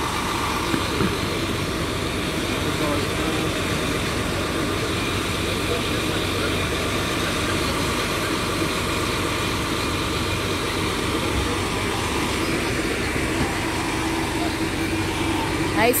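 A charter coach idling, a steady engine hum, with people talking in the background.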